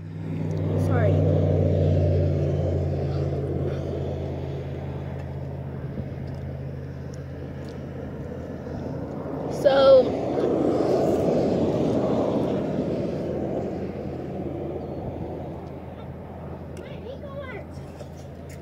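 Road traffic passing: two vehicles go by one after the other, a swell of tyre and engine noise that builds about a second in and a second about ten seconds in, each fading away, over a low steady hum that dies out midway.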